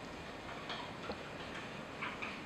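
Marker pen writing on a whiteboard: a few faint taps and light squeaks of the tip against the board, starting about half a second in, over quiet room tone.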